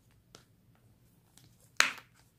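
Faint handling of a small leather wallet, then one sharp snap as its metal press-stud fastener clicks about two seconds in.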